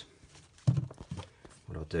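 A man's voice: a short sound, then a few words, with quiet pauses between.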